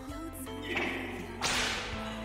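Background music with a swish of noise that builds about a second in and peaks sharply in the last half-second: a whoosh sound effect marking a scene transition.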